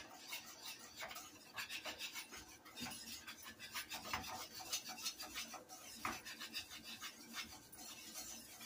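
A wire whisk stirring stiff mashed potatoes in a metal saucepan: faint, quick, repeated scraping strokes.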